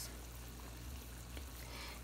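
Pot of water at a rolling boil on a gas burner: a faint, steady bubbling.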